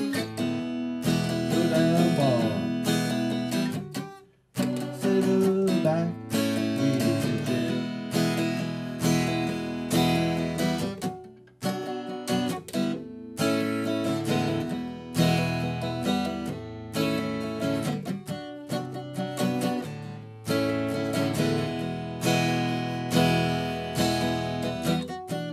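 Larrivée OM-03 acoustic guitar, with a Seymour Duncan Woody soundhole pickup and played through an Acoustic A40 amplifier, strummed in chords during an instrumental passage, with one short break about four seconds in.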